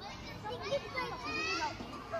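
Several children's voices calling out over one another while playing, high-pitched and overlapping, with no clear words.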